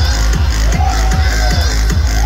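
Loud electronic dance music from a DJ set over a large sound system, a steady kick drum hitting a little over twice a second under heavy bass, with a gliding synth line in the middle.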